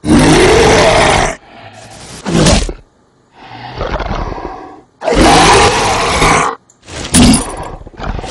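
Horror-film monster roaring: one loud roar of just over a second at the start and another about five seconds in, with shorter, quieter roars and growls between.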